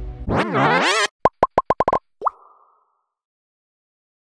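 Electronic glitch sound effect: a wavering, swooping warble for about a second, then a quick run of short beeps and one rising blip.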